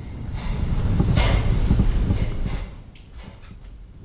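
Handling noise as a heavy power cable is tied up against wire mesh screen: a scraping, rumbling rub that swells about a second in and dies away by about three seconds.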